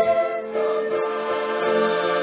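Choir singing held chords in a musical performance.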